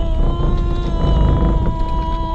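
A voice holding one long, steady note, an eerie 'oooo', over a low rumble.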